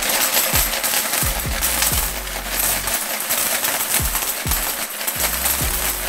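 A steady jingling clatter of Canadian coins pouring and shaken out of a piggy bank onto a pile on a wooden table. Underneath runs background music with a deep bass note dropping in pitch about once a second.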